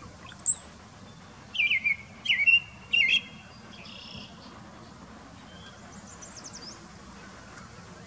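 Male brown-headed cowbird singing a courtship song. A loud, high, slurred whistle comes about half a second in, then a run of low, liquid gurgling notes in three quick bursts over the next two seconds.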